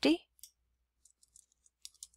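Faint computer keyboard keystrokes: a few scattered, light clicks as numbers are typed.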